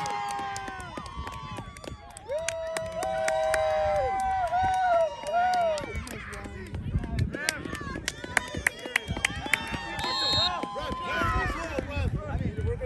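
Voices cheering a goal in long, high-pitched wordless shouts that are held and bend in pitch, coming in waves, with scattered sharp clicks.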